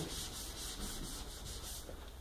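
Chalk scratching across a chalkboard as it is written with, in quick rhythmic strokes about five a second, stopping just before the end.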